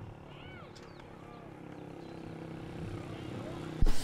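Open-air ambience of faint, distant voices over a steady low engine hum that slowly grows louder. A single sharp knock comes just before the end.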